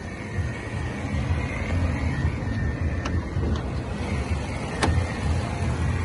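Range Rover Sport's supercharged 3.0 V6 petrol engine idling, a steady low rumble, with a few faint clicks.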